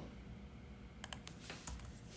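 Faint computer keyboard keystrokes: a few quick key taps about a second in and a couple more just after.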